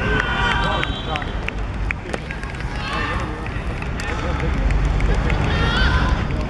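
Footballers shouting and cheering as a goal goes in, in loud high-pitched calls at the start, again about halfway and near the end, over low wind rumble on the microphone.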